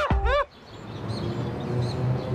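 A woman's excited, high squeals of joy, cut off suddenly about half a second in. Then a faint outdoor background with a few thin bird chirps.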